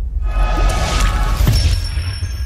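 Logo-reveal music sting: a deep bass drone under a crackling, shattering sound effect that ends in a sharp strike about a second and a half in, followed by a high ringing tone.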